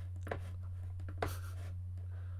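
Steady low electrical hum under a few faint clicks and light scratching sounds.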